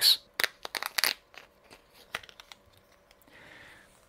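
Plastic blister pack on a card backing being opened by hand, with a run of sharp crackles and pops in the first second, then scattered small ticks and a soft rustle near the end.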